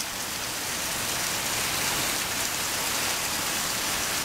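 Heavy rain falling steadily on the ground and roofs in a downpour.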